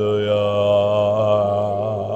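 A man's voice holding one long chanted note in worship, wavering slightly in pitch.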